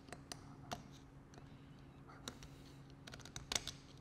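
Faint, scattered light clicks of a thin metal pick tool on an auto air valve's center post and threads, with a quicker run of clicks near the end, as a fragment of copper washer caught on the threads is picked off.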